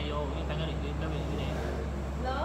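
A man's voice, low and indistinct, in short stretches over a steady low hum.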